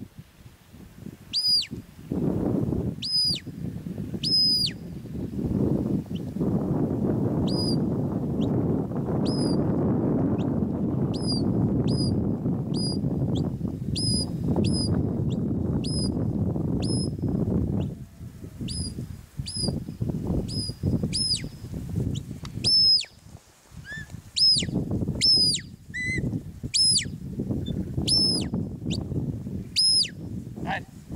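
A small bird calling over and over with short, high chirps, about one a second and quicker toward the end. Under it, a low rushing noise is loud for much of the first half.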